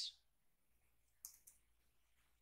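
Near silence with two faint clicks from a computer mouse and keyboard, a little past the middle.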